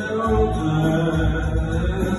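A man singing a slow Jewish song through a microphone and PA, holding long notes over instrumental accompaniment with a steady low beat.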